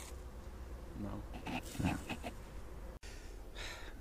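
Quiet speech, two short words, over a low steady outdoor background; the sound drops out abruptly about three seconds in.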